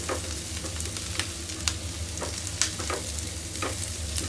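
Chopped onion and garlic sizzling in hot oil in a non-stick frying pan while a spatula stirs them, scraping and clicking against the pan several times. A low steady hum runs underneath.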